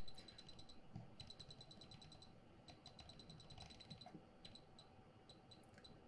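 Faint ticks from a UNI-T UTG962E function generator's controls as the duty cycle is stepped up: a quick run of about a dozen ticks a second, then single scattered ticks.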